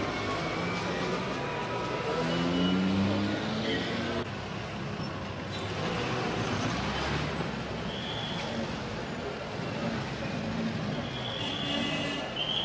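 City street traffic: old cars driving past with their engines running, with the voices of a crowd mixed in.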